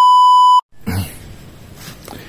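Test-tone beep played with a colour-bars card: one loud, steady beep about half a second long that cuts off sharply, followed by faint background noise.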